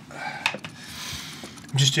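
Small handling sounds: a sharp click about half a second in, then a short soft rustle. A man starts speaking near the end.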